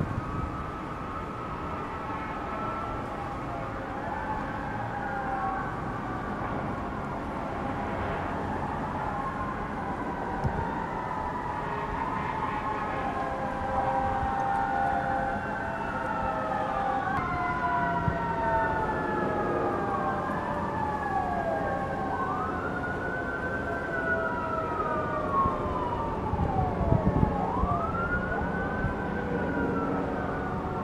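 Several emergency-vehicle sirens wailing at once, their pitches rising and falling in overlapping sweeps. Low rumbling comes in near the end.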